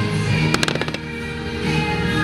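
Fireworks bursting, with a quick cluster of sharp bangs and crackles about half a second in, over steady music.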